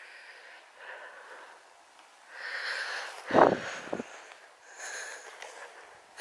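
Soft breathing close to the microphone, with a short, louder double sniff about three and a half seconds in.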